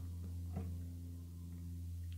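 A steady low hum with a faint tick about half a second in.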